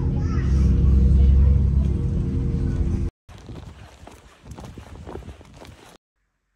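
Bus engine running with a steady low rumble, heard from inside on the upper deck. It stops abruptly about three seconds in and gives way to a much quieter stretch of light knocks and handling noises.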